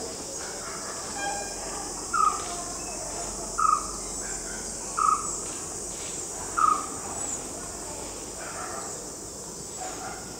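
Outdoor insect chorus, a steady high-pitched trilling, with a short call, likely a bird, repeated four times about a second and a half apart.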